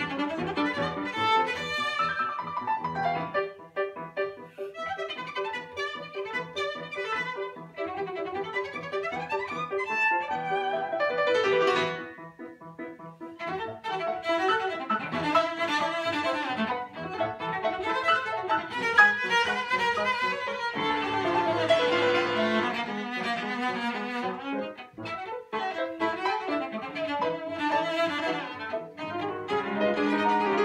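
Cello and grand piano playing a classical piece together, the bowed cello line over the piano. The music drops to a brief quieter passage about twelve seconds in, then builds again.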